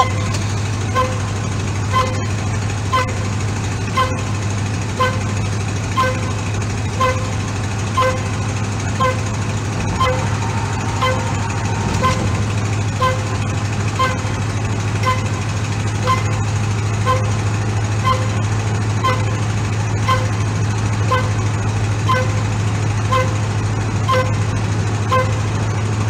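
Steady low drone of a 1991 Chevy C-1500 pickup heard from inside the cab at about 45–50 mph: engine and road noise. Over it runs a regular light ticking, about one tick every half second.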